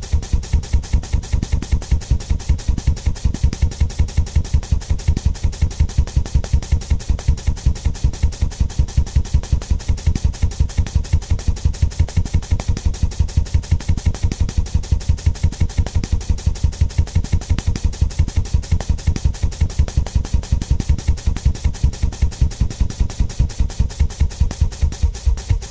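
Audio from a DJ mixing app reduced to a rapid, steady low thumping, about five to six beats a second, with no melody over it.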